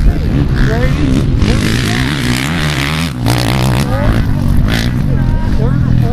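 A pack of off-road dirt-bike engines revving and accelerating hard together, their pitches rising and falling through throttle changes and gear shifts.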